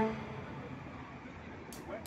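Background music cuts off at the start, leaving faint outdoor ambience: distant voices and a low traffic hum.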